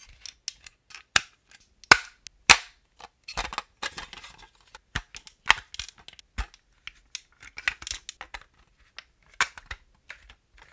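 Hard plastic toy fire-truck building pieces clicking and knocking as they are handled and snapped together: a run of sharp, irregular clicks, the loudest about two seconds in.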